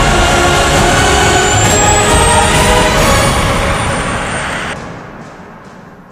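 A coach bus's engine running under a music soundtrack, the mix fading out over the last two seconds.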